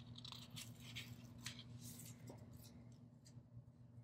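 Faint rustling and crackling of a paper sticker sheet being handled as a sticker is taken off it, mostly in the first half, over a low steady hum.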